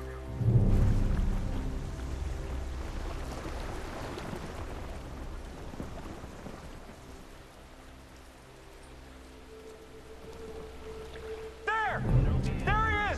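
Film score: sustained low notes with a deep hit about half a second in, under a rain-like hiss that fades around the middle and builds again near the end.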